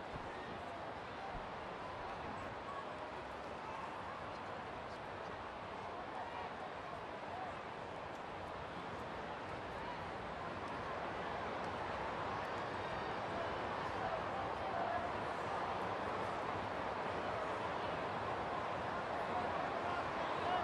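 Ballpark crowd chatter: a steady hubbub of many distant voices, growing a little louder about halfway through.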